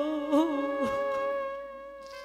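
A woman singing kirtan holds a long note that drops off about a second in. Steady held tones from the accompaniment go on sounding after her voice stops and fade toward the end.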